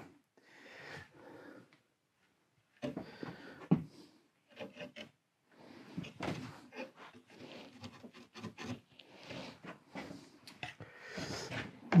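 Wooden bow saw cutting into a wooden guitar neck blank held in a vise, in short, uneven strokes that begin about three seconds in.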